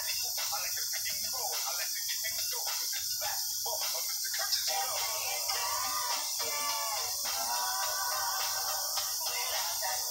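A hip-hop song with a rapped vocal over a beat, with drawn-out sung notes in the second half. The sound is thin, with little bass, over a steady hiss.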